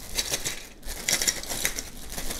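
Clear plastic bag crinkling as plastic plug adapters are shaken out of it, with a string of light clicks as the plug heads knock together.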